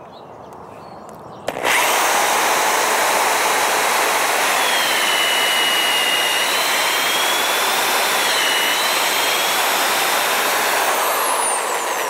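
Corded electric drill starting up about a second and a half in and boring steadily into a hardwood log, its whine shifting in pitch as the bit cuts, then easing off near the end. It is drilling a hole for a mushroom spawn plug.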